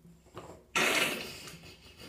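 Bath water splashing: a sudden splash about three-quarters of a second in that dies away over about a second, after a faint knock.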